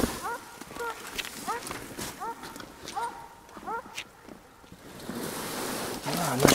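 A dog barking over and over, about one bark every 0.7 s, stopping about four seconds in.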